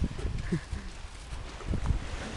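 Footsteps crunching on beach stones, uneven and irregular, mixed with a low rumble of wind and handling on the camera microphone.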